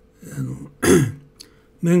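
A man clearing his throat once, about a second in, just after a brief low vocal hum.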